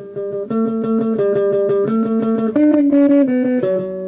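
Electric guitar playing a lead line of single notes, each picked rapidly and evenly several times before moving to the next pitch. The phrase ends on a held note that rings out near the end.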